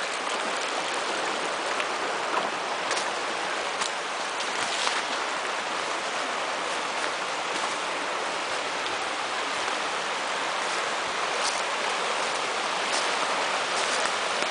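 Small rocky brook running over stones and riffles, a steady rushing of water.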